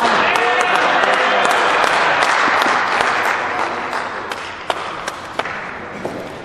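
Spectators cheering and clapping with shouting voices, breaking out suddenly right after an ice stock shot comes to rest, then fading over the last couple of seconds, with a few sharp single claps or knocks near the end.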